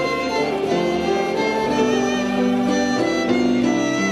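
A hymn tune played on violin over a plucked accompaniment: held, clearly pitched notes moving step by step at a steady level.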